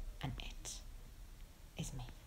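A woman's quiet, partly whispered speech: a short phrase about half a second in, and another word starting near the end.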